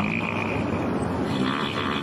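A novelty wind instrument shaped like a coil of pink intestines, blown through a mouthpiece, giving a steady raspy buzz that sounds like a fart.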